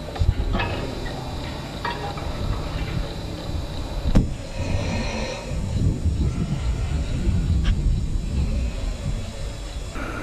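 Wind rumbling on the microphone, uneven and gusty, with a few sharp clicks.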